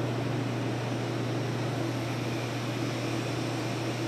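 A steady low machine hum with an even rushing noise over it, unchanging throughout, with no separate knocks or clicks.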